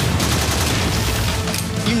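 Rapid rifle gunfire, a sustained volley of shots, mixed with music.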